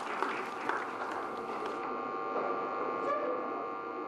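A steady electrical hum of several held tones over faint background crowd noise.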